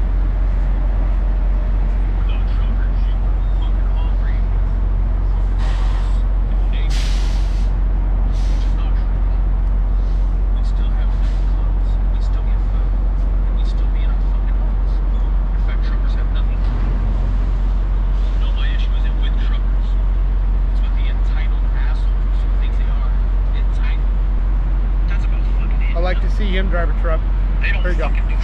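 Steady low rumble of idling diesel trucks, with short hisses of air around six to eight seconds in.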